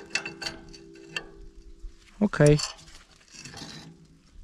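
Light metallic clicks and taps from a gloved hand handling the steel packer roller of a disc harrow, over a steady metal ring that fades away during the first half.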